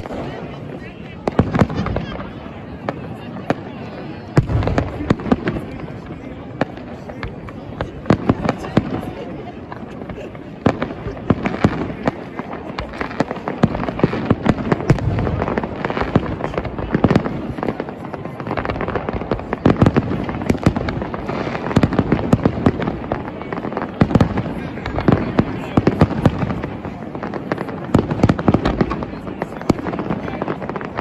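Aerial fireworks bursting overhead in a dense, unbroken barrage of sharp bangs and crackles, several every second.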